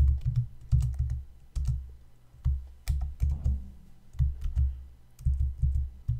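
Typing on a computer keyboard: keystrokes in irregular clusters, each with a heavy low thump under the click.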